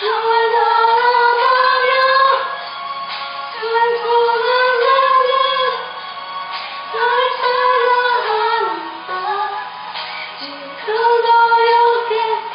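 A young woman singing solo, holding long wavering notes in phrases of two to three seconds with short breaks between them.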